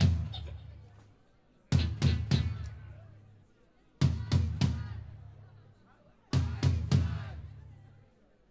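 Live rock band playing a stop-start figure: three hard stabs of electric guitar chord and drums about a third of a second apart, each group left to ring out and fade, repeating about every two and a quarter seconds.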